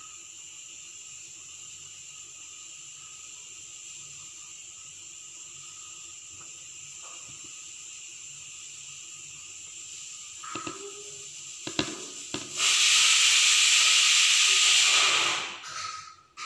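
A faint steady hiss, a few soft taps between about ten and twelve seconds in, then a loud hissing rush that starts suddenly and lasts nearly three seconds before fading away.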